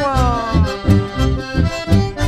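Live chamamé: bandoneón and button accordion playing sustained chords and melody over a steady bass-guitar beat of about two to three pulses a second.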